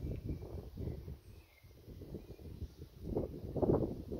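Irregular low rumble of wind buffeting a handheld camera's microphone outdoors, swelling louder about three seconds in.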